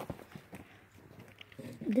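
A few light clicks and taps of handling noise, as small plastic toy pieces and the recording phone are moved about, with a voice starting near the end.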